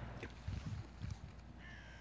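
Faint open-air background with a low rumble, and a single short bird call near the end.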